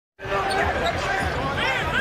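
Basketball being dribbled on a hardwood arena floor, a low bounce about three times a second, under a commentator's voice.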